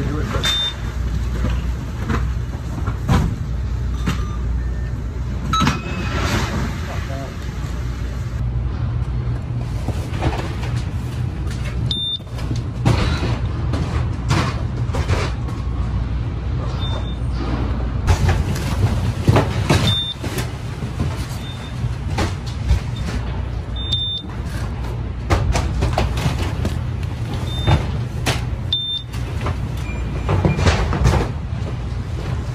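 Warehouse package conveyor running with a steady low hum while boxes are unloaded from a trailer: cardboard boxes knock and thud onto the belt again and again. Short high beeps from a handheld package scanner sound every few seconds.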